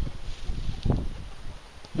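Low wind rumble on the microphone in an open field, with faint rustling and a soft tap about a second in.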